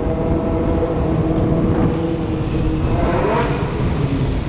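Motorcycle engines in a group ride: a steady engine drone over low wind rumble on a helmet-mounted microphone, with a rising rev from a bike about three seconds in.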